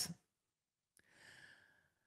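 Near silence, broken about a second in by a faint click and a woman's soft exhale, a quiet sigh lasting about a second.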